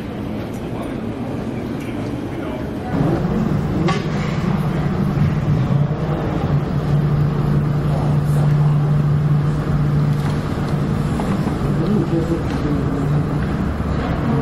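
Airport terminal background noise with indistinct voices. About three seconds in, it steps up louder and a steady low drone sets in and holds.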